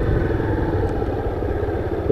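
Small motorcycle engine running steadily at low revs as the bike is ridden slowly through a tight cone course, a fast, even firing pulse.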